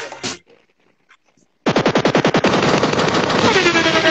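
Rapid-fire machine-gun sound effect played through a DJ mixer. It starts suddenly about one and a half seconds in, after a short near-silent gap, and goes on as a fast, dense rattle of many shots a second.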